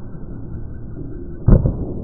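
Slowed-down sound of an Olympic weightlifting snatch: a low rumble, then a single heavy thud about one and a half seconds in as the lifter drops under the barbell and lands in the squat catch, with a short low ring after it.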